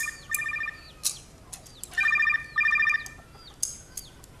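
Mobile phone ringing: a rapidly pulsing electronic ringtone in short trills. There are two at the start and two more about two seconds in.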